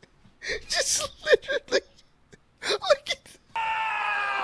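A man laughing hard in short, breathy, high-pitched bursts, in two bouts. Near the end the wrestling clip's own sound cuts in suddenly and runs on steadily.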